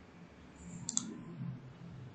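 A single computer mouse click about a second in, over faint low background noise.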